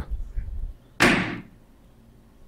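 A gnarled wooden Zen staff struck once on the floor, a single sharp knock that dies away quickly, after soft handling noise as it is raised. The strike is the teacher's wordless answer to "How do you attain Zen?"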